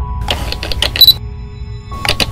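Animated-logo sound effects over music with steady held tones: a quick run of sharp mechanical clicks, like a camera lens turning and its shutter firing, ending in a bright high ping about a second in.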